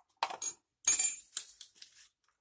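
A plastic wireless mouse and a small hard object handled and set down on a tile floor: a few sharp clicks and clinks, the loudest about a second in.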